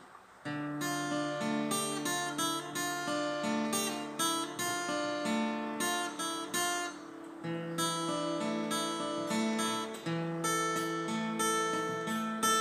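Acoustic guitar fingerpicked through a D minor chord progression with a picked melody line over the chords. The notes begin about half a second in, break off briefly about seven seconds in, then carry on.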